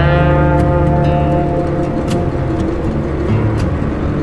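Motorcycle engine running at highway speed, its pitch rising a little in the first second and then holding steady.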